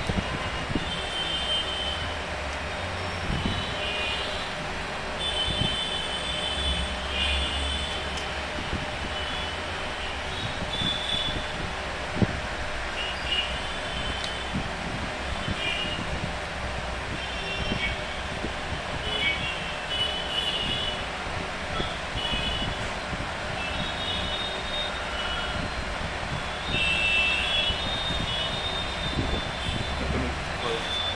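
Steady background rumble and hiss, with short high-pitched chirps or beeps coming and going throughout and a single sharp click about twelve seconds in.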